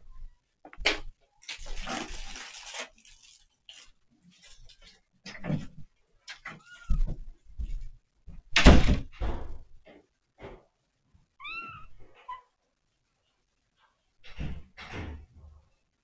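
Kitten meowing briefly twice amid knocks and rustling as household items are handled and moved. A heavy thud about nine seconds in is the loudest sound.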